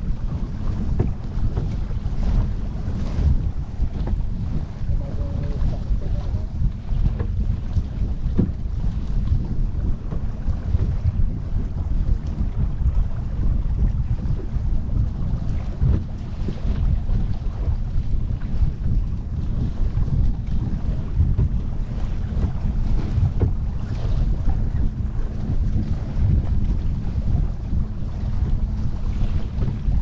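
Wind buffeting the microphone in a steady low rumble, over water rushing and splashing along the hull of a sailboat under way.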